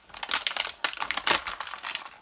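Clear plastic packaging around a toy disc pistol crinkling as hands handle it and pull it open, a dense run of short crackles.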